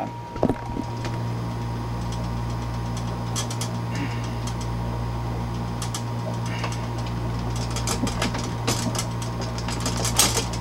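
Light metallic clicks and taps of wrenches on copper refrigerant tubing and its fittings as a line is connected, over a steady low machine hum that starts about a second in.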